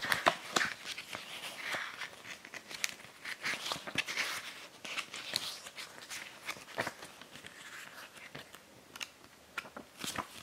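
Pages of a small paper booklet being flipped through by hand: a string of soft rustles and sharp page flicks, on and off.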